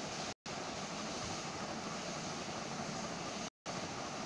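A steady hiss of background noise with no speech in it. It cuts out abruptly to dead silence twice, for a moment just after the start and again near the end.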